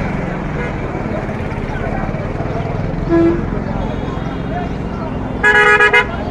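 Vehicle horns in street traffic: a short low toot about three seconds in, then a louder, higher horn beeping in a quick run near the end, over a steady murmur of crowd voices and passing vehicles.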